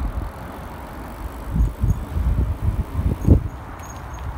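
Riding a bicycle along a paved path: tyres rolling and wind buffeting the action camera's microphone, in uneven low gusts that are strongest past the middle.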